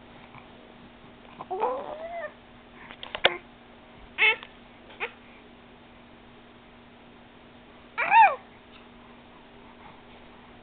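A 4½-month-old baby making short, high-pitched vocal noises that bend up and down in pitch: a longer one about a second and a half in, a few quick ones between three and five seconds, then a quiet gap before the loudest, about eight seconds in.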